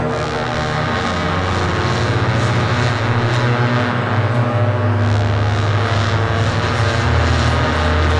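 Experimental electronic noise music from live synthesizers: a dense, steady low drone with a wash of hiss above it, growing fuller about a second in.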